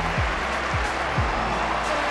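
Background music with three deep bass hits that slide down in pitch.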